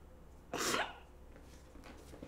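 A woman crying: one sharp, breathy sob about half a second in, lasting under half a second, over a faint steady low hum.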